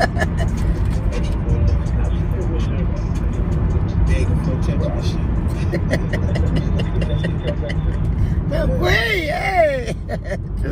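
Inside a moving car's cabin, a steady low rumble of road and engine noise, with music and voices faint beneath it. Near the end a voice rises and falls.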